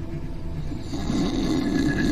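A man's feigned snore, a rough rasping breath that begins about a second in, over a low steady drone of background music.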